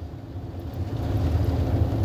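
Low steady rumble of a car heard from inside the cabin, growing a little louder toward the end.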